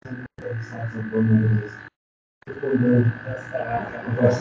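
A man's voice speaking haltingly over a video-call connection, garbled and distorted. It cuts out to dead silence twice, briefly just after the start and for about half a second in the middle. A steady high-pitched tone runs under it.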